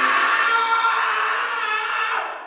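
Sustained synth-pad chord from the Hive 2 software synthesizer closing an electronic dance track: several held tones with no bass or drum beat under them.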